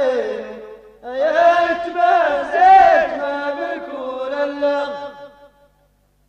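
Chanted singing from an Amazigh music recording in phrases: one phrase trails off in the first second, then a long phrase runs until shortly before the end, followed by a brief silence.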